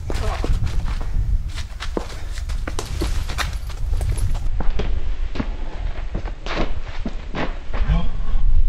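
A self-defence scuffle and heavy-bag work: feet scuffling, a run of sharp knocks from strikes and grabs, and short vocal grunts or hard breaths from the fighters, several of them near the end.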